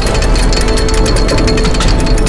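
Loud soundtrack music with a deep bass, layered with a rapid, dense mechanical clatter: a robot-transformation sound effect of armour plates shifting and locking into place.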